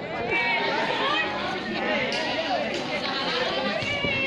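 Chatter of several voices talking at once, with no single clear speaker.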